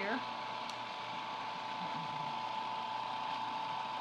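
Cuisinart food processor motor running steadily, blending a thick chicken, egg and Parmesan mixture into a paste: an even whirring hum with a steady high whine.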